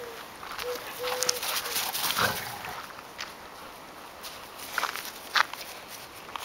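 Two dogs, a puppy and a larger dog, playing rough on grass. One dog gives a short vocal sound about two seconds in, and there is scuffling and footfalls later.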